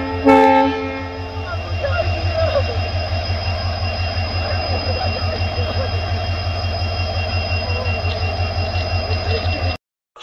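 Train horn sounding in two blasts, the second held about a second, followed by a steady, rapidly pulsing low rumble of the train running, with a few faint squeals from about two seconds in; the sound cuts off just before the end.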